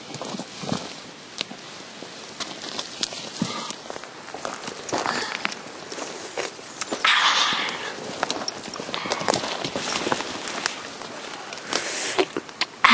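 Footsteps and the rustle and crackle of leafy branches and twigs as someone pushes through dense brush, with many sharp snaps and a louder rustle about seven seconds in.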